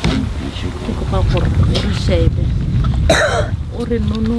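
A voice speaking in prayer, over a steady low rumble of wind on the microphone, with a short cough-like burst about three seconds in.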